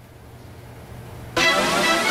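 A faint low hum, then about a second and a half in a loud music sting cuts in suddenly: the newscast's transition music leading into the weather segment.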